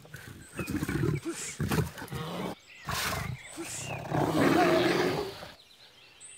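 A bear roaring in a series of rough growls, the longest and loudest near the end, cutting off suddenly about five and a half seconds in.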